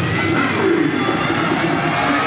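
Arena crowd cheering and shouting, with the routine's backing music underneath.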